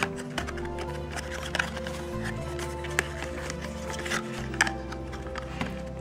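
Background music with steady held notes, with a few short taps and clicks of cardboard-and-plastic packaging being handled on top.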